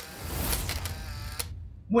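Electronic transition sound effect: a hissing burst of noise with a low rumble underneath, lasting about a second and a half and cutting off sharply.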